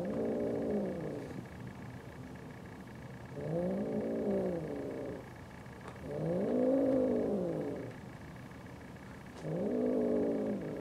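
Cat yowling during a mating mount: four long, drawn-out calls, each rising and then falling in pitch, about every three seconds.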